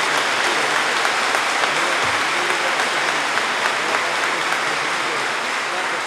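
Audience applauding steadily, slowly dying down.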